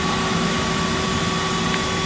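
A steady machine hum: a constant low drone with a thin, unchanging high whine over it.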